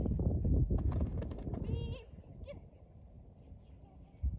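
Wind rumbling on the microphone, loud for the first two seconds and then much quieter. A few sharp clicks come about a second in, and a short high chirp comes just before the rumble drops.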